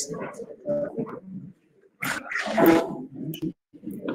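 Indistinct voices in a small room, in short broken stretches with a brief pause, picked up faintly and unclearly with no words made out.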